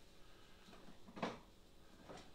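Quiet room tone with one short, soft knock about a second in.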